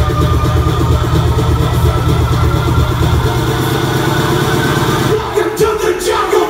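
Future house dance music mixed live by a DJ, loud and bass-heavy with a fast, driving pulse. The bass drops out about five seconds in, leaving the upper parts of the track.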